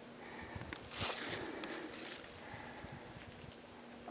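Faint rustling and light ticks of footsteps in dry leaf litter, with a brief hiss about a second in.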